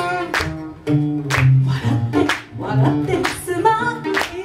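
A woman singing a pop song live into a handheld microphone, accompanied by acoustic guitar, with sharp percussive hits about once a second.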